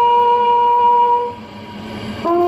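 A bugle sounding a slow ceremonial call, one long held note that breaks off about a second and a half in.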